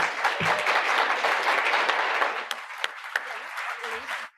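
Audience applauding, a dense patter of many hands clapping that thins out over the second half and stops near the end.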